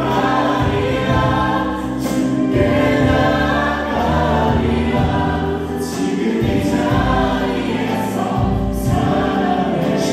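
Live contemporary worship music: several singers with microphones singing together in Korean over a band, with a steady bass line and occasional cymbal-like strokes.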